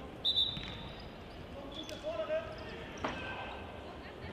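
Indoor football in a sports hall: a ball thuds on the hard floor about three seconds in, among short high-pitched squeaks and a player's shout, all echoing in the large hall.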